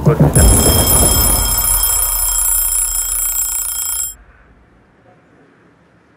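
A steady, high-pitched electronic ringing like an alarm, over a low, throbbing film score. Both cut off suddenly about four seconds in, leaving a faint room hush.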